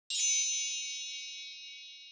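A single bright, high chime struck once, a ding sound effect that rings on and fades slowly.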